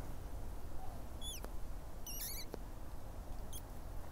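Small bird calling: a few short, high falling chirps about a second in, a quicker twittering burst around two seconds, and one brief high note near the end, over faint steady background noise.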